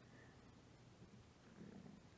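Near silence: room tone, with a brief faint low sound near the end.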